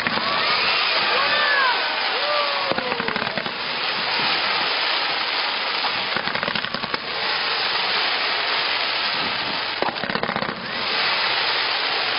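Fireworks display: a dense, continuous crackling of bursting shells, with sharper bangs about 3, 7 and 10 seconds in.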